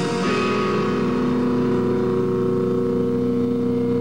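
Live rock band playing electric guitars, letting a chord ring out and sustain steadily for nearly four seconds. The drum hits stop just as the chord begins.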